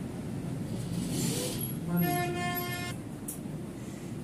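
A single steady pitched tone with several overtones, lasting just under a second about two seconds in, over low background noise.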